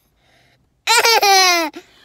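A toddler laughing: one burst about a second in, a couple of quick high-pitched pulses running into a longer note that falls away.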